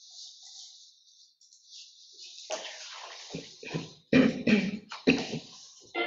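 A mobile phone buzzing in a handful of short, sudden bursts, with its ringtone melody starting at the end.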